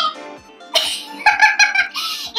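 A woman sneezes once, suddenly, about three-quarters of a second in, then makes a short vocal sound. Background music plays underneath.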